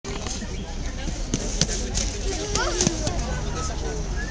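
Indistinct chatter of people standing around, with a voice rising and falling in pitch about halfway through and a few short sharp knocks.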